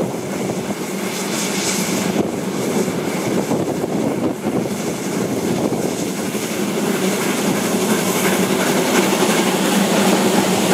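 A narrow-gauge train running along the line, heard from a carriage window: a steady rumble of the coaches on the track, with gusts of wind noise on the microphone early on.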